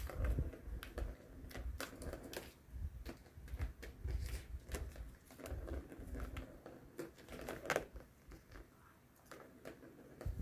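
A plastic ball batted by a cat's paw clicking and rolling around the plastic track of a circular cat toy, with irregular clicks and knocks over a low rolling rumble. It gets sparser near the end.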